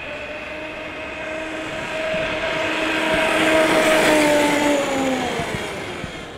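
Stock HoBao Hyper MT Sport Plus electric RC monster truck on a 4S LiPo making a full-throttle speed pass: the brushless motor and drivetrain whine over tyre noise on asphalt. The sound grows louder as the truck approaches, peaks about four seconds in, then drops in pitch and fades as it passes.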